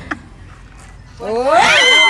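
A woman's loud, drawn-out wailing cry, starting about a second in with a steep rise in pitch and then held high.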